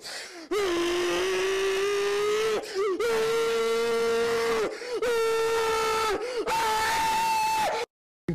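A man's voice holding four long, drawn-out yells, each at a steady pitch after a short scoop, the last one pitched higher. The sound cuts off suddenly near the end.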